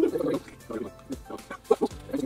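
People laughing in short, choppy bursts: a burst at the start, a quieter stretch, then a few sharp bursts near the end.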